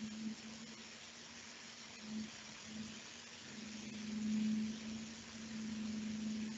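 Faint steady low hum over light hiss, swelling and fading and loudest about four seconds in, with no speech.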